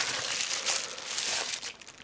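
Crinkling, rustling handling noise close to the microphone as things are picked up and moved about. It fades out near the end.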